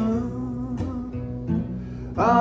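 Martin D-18 acoustic guitar strummed, its chords ringing, with fresh strums about every three-quarters of a second.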